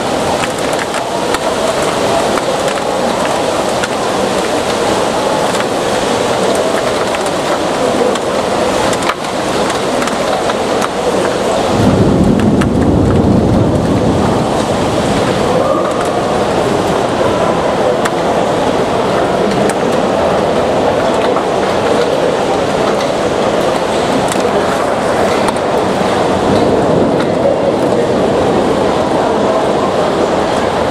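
Heavy downpour of large raindrops, a dense steady rush of rain. About twelve seconds in, a low rumble swells for a few seconds and fades.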